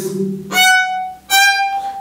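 Solo violin playing short bowed notes: a lower note at the start, then two separate notes of the same higher pitch, each about half a second long, with a brief break between them.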